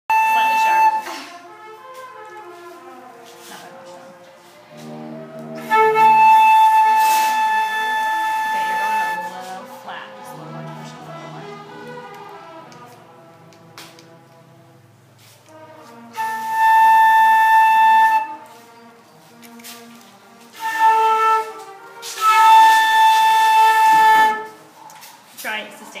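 Flute playing one sustained tuning note, held five times at the same pitch for between about one and three seconds each, with quieter gaps between.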